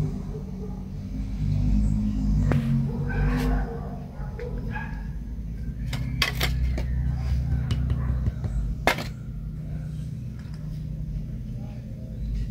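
Handling sounds as a small piece of clay is shaped into a miniature cup: a few sharp clicks and taps, spread out, over a steady low hum.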